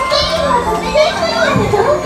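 Several high-pitched, childlike voices chattering and calling over each other, with faint music underneath.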